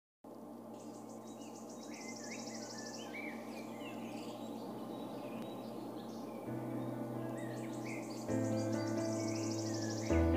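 Outdoor nature ambience: insects trilling in short pulsed bursts, with birds chirping. A soft, low sustained music chord grows beneath it, swelling in steps about six and eight seconds in.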